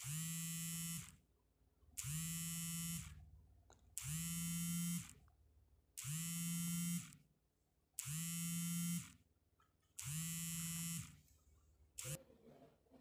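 A small vibration motor buzzing in six regular pulses, each about a second long and two seconds apart, with a steady low pitch that settles just after each start.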